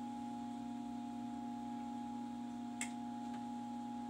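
Steady low electrical hum with a fainter higher tone above it, and one short soft click about three quarters of the way through.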